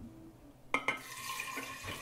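Water pouring steadily into a glass jar, preceded by two quick clinks about three-quarters of a second in: cold water being added to dissolved sugar water for a batch of water kefir.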